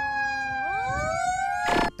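Fire truck siren: a held tone that sags slightly in pitch, joined about half a second in by a wail that climbs steadily in pitch as it winds up.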